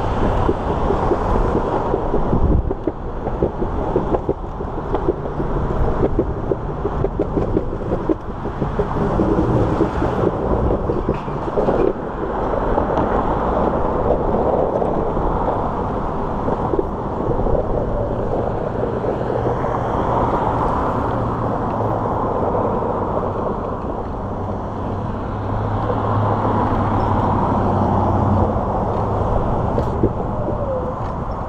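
Road traffic: cars and a pickup truck driving past on a wide street, a continuous rumbling noise, with a steady low engine hum through much of the second half.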